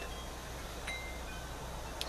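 A few faint, short high-pitched ringing tones at different pitches over a steady low hum.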